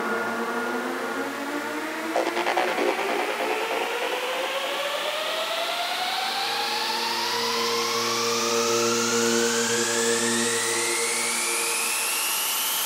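A synthesizer riser sweeps steadily upward in pitch over sustained synth tones, with no kick drum: a psytrance breakdown building up. A short glitchy burst of noise comes about two seconds in.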